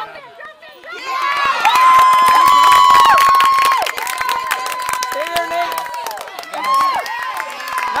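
Spectators cheering and yelling after a hit, starting about a second in, with one long held shout over the crowd; loudest for the next few seconds, then dropping to a lower level of shouting.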